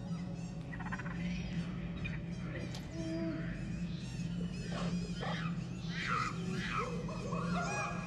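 A clamour of many short animal calls, bird-like squawks and chirps rising and falling in pitch, growing busier in the second half, over a steady low hum.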